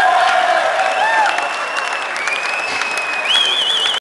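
A crowd applauding, with a shrill whistle over it from a man whistling with his hand to his mouth. He holds a long steady note that flicks upward about a second in, then higher notes, and breaks into a warbling trill near the end.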